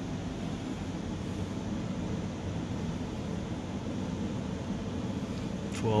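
Steady low hum of equipment fans and room ventilation, even and unchanging throughout.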